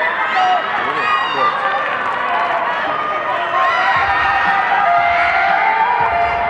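Many high-pitched voices shouting and calling over one another across a football pitch: young players and spectators during a youth match, with no single clear speaker.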